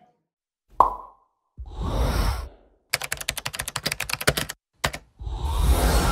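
Sound effects for an animated logo: a single pop, then a whoosh, then a quick run of ticking clicks lasting about a second and a half, one more click, and a loud swelling whoosh near the end.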